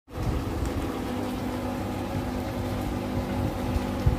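A steady motor-like hum with several held tones over a low rumble, starting abruptly.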